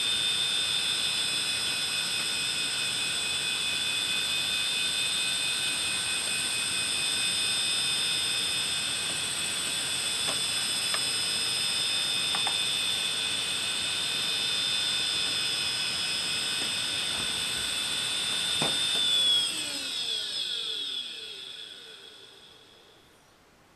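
Opened hard disk drive with its cover off, the platter spinning at speed: a steady high-pitched whine with a few faint clicks. Near the end a click comes, then the whine falls in pitch and fades as the platter spins down.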